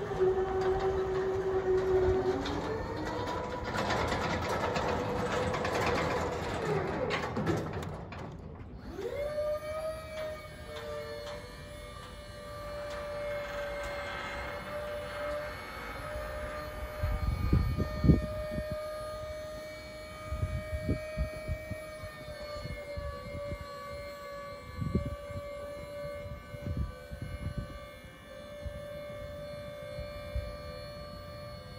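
Electric scissor lift's hydraulic pump motor whining steadily as the platform rises. It stops briefly about 8 seconds in, then picks up again with a rising pitch that settles to a steady tone. Occasional knocks come through in the second half.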